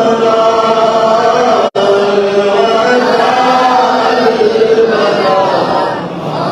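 A man chanting an unaccompanied Urdu naat into a microphone, holding long, bending melodic notes. The sound drops out completely for a split second about two seconds in.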